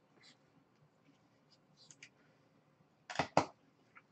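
Trading cards handled in gloved hands: faint rustles and small clicks, then two short sharp scrapes a little after three seconds in as a card is swung away and the next one is brought up.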